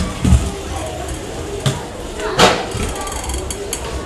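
Off-ice skates working on a hard floor: low thumps as the skates strike the floor, a sharp knock about two and a half seconds in, then a quick rattle of clicks for about a second.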